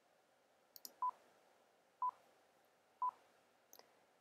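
Three short electronic beeps of one pitch, one a second: SlideRocket's countdown before its audio recorder starts capturing. A faint click comes just before the first beep.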